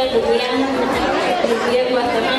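Speech: a woman talking into a microphone, with other voices chattering in the hall.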